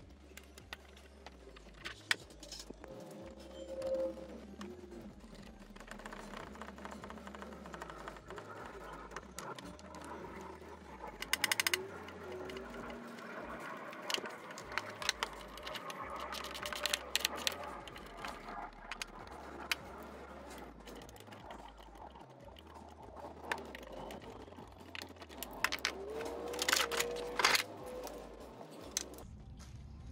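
Hand tools clicking and knocking against metal while the battery terminals are undone and the car battery is lifted out of the engine bay, with a quick run of ratchet-like clicks about a third of the way through.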